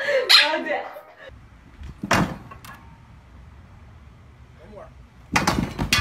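A man's voice briefly at the start, then a single sharp knock. Near the end comes a loud clattering crash: a person falling onto concrete, with a long bar coming down with him.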